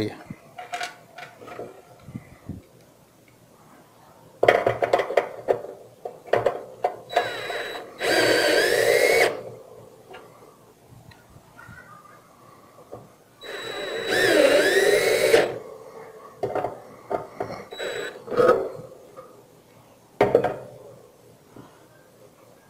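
Cordless drill-driver with a Phillips bit driving screws into pre-drilled holes in metal, in two runs of about two seconds each, the motor's pitch bending under load as each screw goes in. Short clicks and knocks of handling between the runs.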